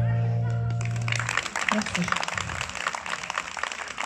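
The final held chord on a stage keyboard rings out and fades over about the first second. Audience applause then takes over, a dense patter of clapping that carries on to the end.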